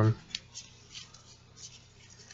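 Trading cards being flipped and slid through the hands, giving a few faint, light clicks and rustles over a low steady hum.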